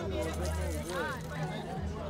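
People talking over one another, with music underneath that carries a deep, steady bass.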